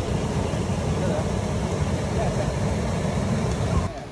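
Creek water rushing over shallow rock ledges, a steady rush that cuts off abruptly near the end.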